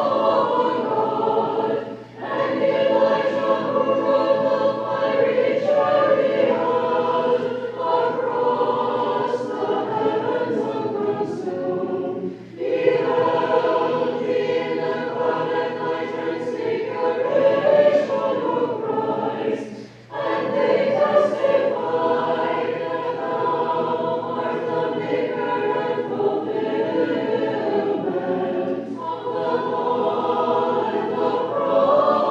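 Choir singing unaccompanied Orthodox vigil chant, in long sustained phrases with three brief breaks between them.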